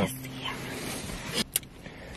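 Quiet car cabin with a faint hum and soft rustling, then a short double click about one and a half seconds in: a smartphone camera's shutter sound as a photo is taken.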